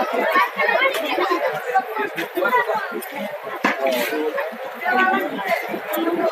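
Chatter of many people talking at once in a street crowd, overlapping voices with no single speaker standing out, and one sharp click about three and a half seconds in.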